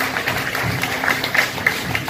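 Scattered audience hand clapping over background music with a pulsing bass beat, about two beats a second.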